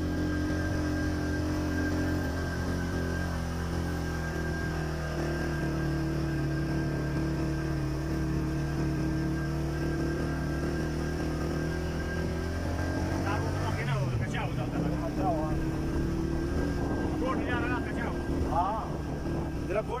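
A vehicle engine runs steadily on the move, its drone drifting slowly up and down in pitch. Voices come in over it in the second half.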